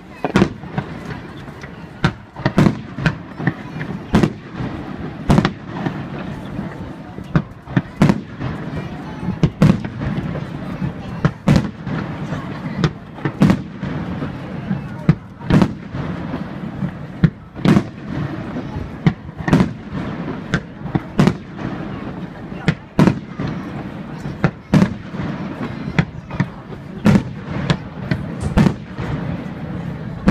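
Aerial fireworks shells bursting, a continuous run of sharp booms about one or two a second over a steady background noise.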